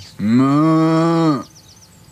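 A cow mooing once: a single low moo of a little over a second, held at a steady pitch.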